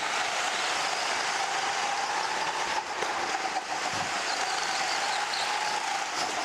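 Onboard sound of a go-kart driving at speed: a steady running noise with a faint steady whine.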